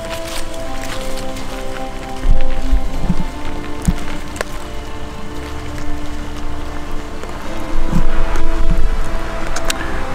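Background music with held notes that change every second or two.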